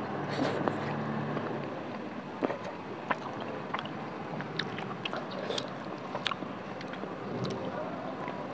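A person chewing a mouthful of rice and pork curry close to the microphone: scattered soft wet clicks and lip smacks over a steady background hiss.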